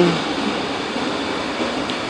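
Steady, even background noise of air conditioning or room ventilation running, with no beeps or other events.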